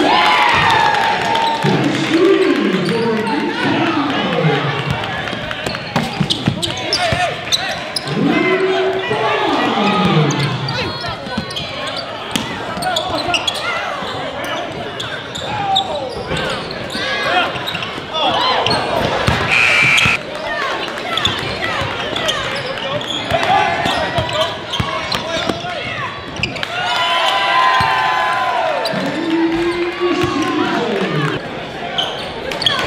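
Live court sound of a basketball game: players and spectators shouting without clear words, over repeated knocks of the ball bouncing on the hardwood floor.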